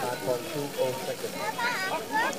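Mostly speech: a German-speaking announcer talking, over a steady background hiss of water from a fountain.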